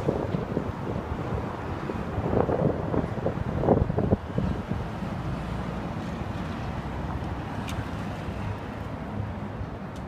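Wind buffeting the microphone over the steady noise of road traffic, with two short louder bursts about two and a half and four seconds in.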